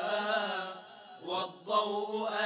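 A male vocal group chanting an Arabic devotional nasheed a cappella, several voices together over a steady low held note. The phrase fades past the middle, there is a brief break, and the singing picks up again near the end.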